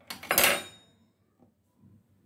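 A small metal makeup container set down on a hard surface: one brief metallic clatter about half a second in, with a short high ringing tail.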